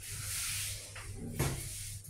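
Modernized Hitachi passenger elevator as its doors sit shut and the car gets under way downward: a rushing hiss, then a faint click and a heavier mechanical thump about one and a half seconds in.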